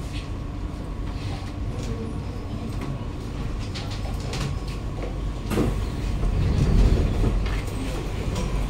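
Steady low rumble inside a Kawasaki-CRRC Sifang C151A metro carriage. About five and a half seconds in, the carriage's sliding doors open with a sudden burst of noise, followed by a louder low rumble.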